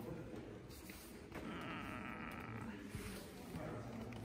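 A cat making quiet sounds as it is stroked by hand.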